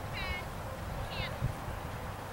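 Two short, high pitched animal calls about a second apart, over a steady low rumble of wind on the microphone.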